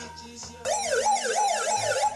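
Circuit-bent electronic noise box played by fingers on its metal contacts, giving a warbling siren-like tone that starts about half a second in and sweeps up and down about twice a second.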